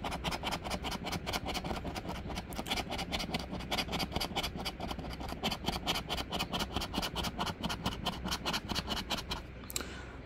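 A coin scratching the latex coating off a scratch-off lottery ticket in quick back-and-forth strokes, several a second, stopping shortly before the end.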